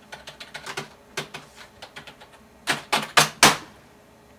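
Computer keyboard being typed on: a quick run of key clicks, then a few much louder, harder keystrokes in the second half.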